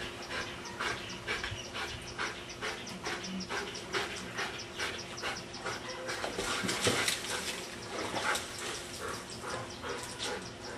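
A dog panting quickly and rhythmically, about three to four breaths a second, as it swims in a pool, with a louder splash of water about six to seven seconds in as it reaches the steps.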